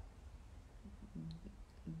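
Quiet room tone with a low hum and one faint click a little past the middle. A woman's voice starts softly about a second in.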